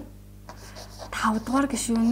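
Chalk writing on a blackboard, with short scratches and taps as characters are drawn, faint in the first second. A woman's voice starts speaking over it about a second in.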